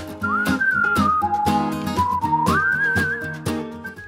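Background music: a whistled melody over instrumental accompaniment with a steady beat.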